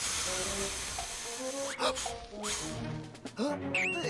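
A cartoon character blowing hard at a birthday candle: a long breathy blow for about the first second and a half, then a shorter puff, over background music.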